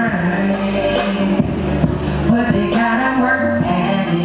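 Live band music with singing, heard from the audience area of a club.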